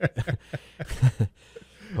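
Soft chuckling from a man: a few short, breathy bursts of laughter, trailing off.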